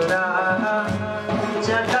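Khowar folk music from a small live ensemble: a Chitrali sitar plucked over a steady low drone, with a wavering melody line on top. Hand-drum strokes fall about once a second.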